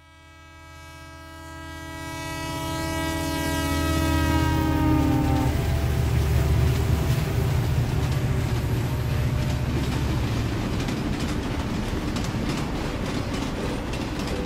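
A train horn sounds as one long blast, fading in and cutting off about five and a half seconds in. A freight train's low rumble and wheel clatter build up under it and carry on steadily after the horn stops.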